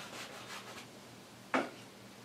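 Bristle brush rubbing quickly back and forth on canvas, blending oil paint into a soft haze. The strokes fade out in the first second, and there is a brief sharp sound about one and a half seconds in.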